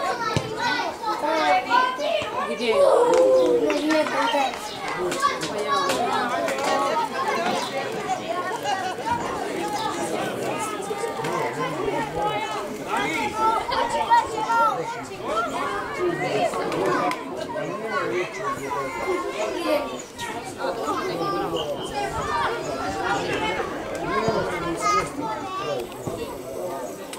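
Many children's voices shouting and calling over one another during play, overlapping so that no clear words come through.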